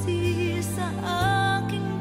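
A woman singing in Tagalog with band accompaniment under her voice. The held low chord beneath her changes about a second in.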